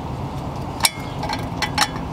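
Metal clicks of a brake caliper's retaining spring being worked by hand into its holes on the caliper: a sharp click a little under a second in and two lighter ones near the end, over a steady low hum.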